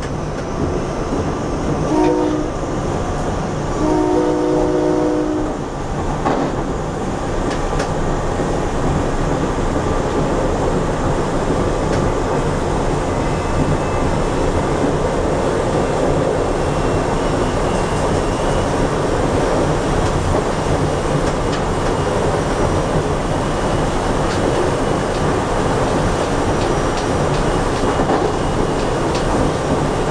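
SEPTA Silverliner V electric commuter train running at speed, its horn sounding a short blast about two seconds in and a longer blast around four to five seconds. Under the horn is the steady rumble of wheels on the track.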